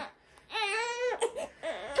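A small child crying: a high-pitched wail that starts about half a second in.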